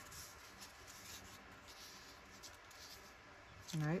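Faint rustling and sliding of paper strips as they are handled and laid down on a cutting mat, with light scrapes and ticks.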